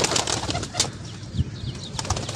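Domestic pigeons flapping their wings around a rooftop loft, a rustle of wingbeats loudest in the first half. A few faint, short, high bird chirps come later.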